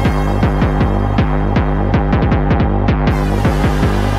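Hardcore acid techno playing from a vinyl DJ mix: a kick drum beating at about 170 beats a minute. In the second half it breaks into a quicker drum roll while the treble is filtered away, then the full sound snaps back a little after three seconds in.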